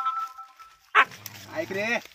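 Dog held by a rescuer's catch pole, crying: a long high whine that stops about a second in, then a sharp yelp and short rising cries near the end.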